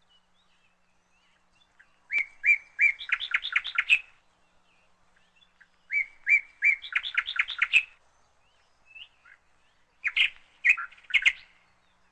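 A small songbird singing three short phrases about four seconds apart, each a few separate high notes followed by a fast run of repeated notes; the last phrase is shorter.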